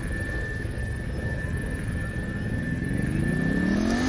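A rumble with a steady high tone through most of it; over the last second and a half a whine rises steadily in pitch.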